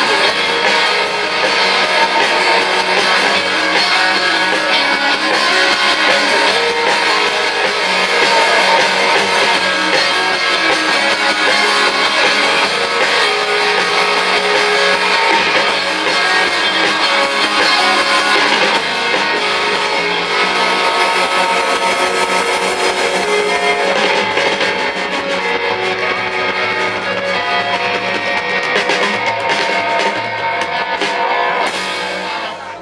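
Live rock band playing an instrumental passage with no vocals: electric guitars, bass guitar and drum kit.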